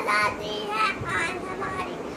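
A young boy's voice reciting a poem.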